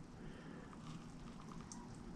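Faint, steady outdoor background noise with a low rumble and no distinct sound event.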